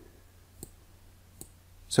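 Two computer mouse button clicks, a little under a second apart, over a faint low hum.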